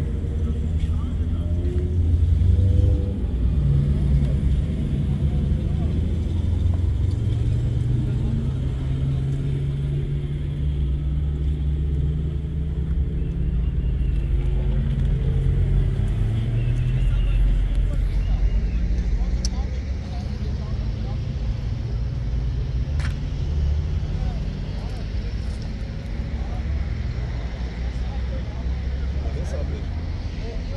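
Steady low rumble of vehicle engines and road traffic, with faint voices in the background and a few light clicks near the end.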